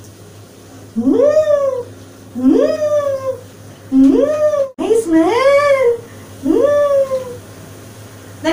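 Wet Persian kitten meowing five times, each meow rising and then falling in pitch, about a second or so apart, just out of its first bath.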